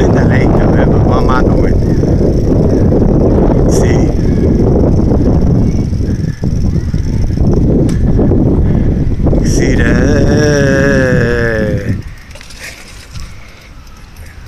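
Wind buffeting the phone's microphone as a bicycle rolls along a path, a loud steady rush with a few light clicks and knocks. Near the end comes a short wavering squeal, then the rush drops off sharply as the bike slows to a stop.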